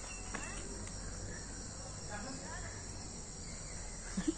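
Faint steady high-pitched insect buzzing, like crickets, with a couple of faint short chirps.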